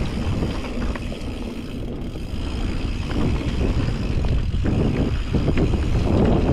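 Mountain bike descending dirt singletrack: wind rushing over the microphone and tyres rolling on dirt, with scattered clicks and rattles from the bike over bumps. It grows louder in the second half.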